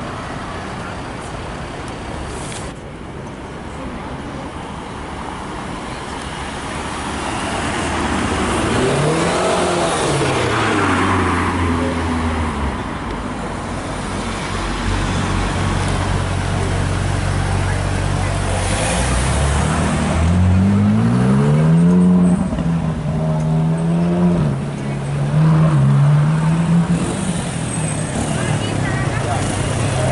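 Car engines in street traffic: an engine revs up and falls back about a third of the way in, holds a steady low note, then revs up again and wavers in pitch before settling near the end.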